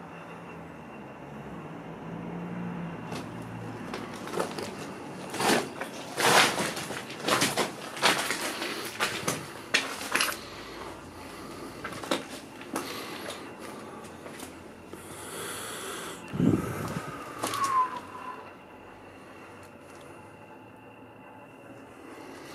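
Irregular knocks, clatter and scrapes of someone moving about and handling things inside a small concrete shelter, thickest in the middle of the stretch, followed by a dull thump and a short squeak.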